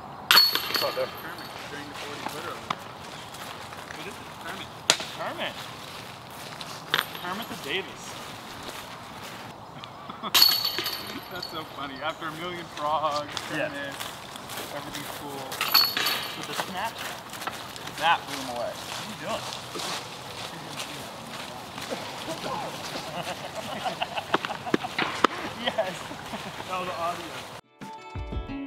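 Discs hitting the chains of an Innova disc golf basket: three loud metallic chain crashes with a jangling ring, about half a second in, near ten seconds and near sixteen seconds, each a putt caught in the basket. Quiet voices talk between the hits.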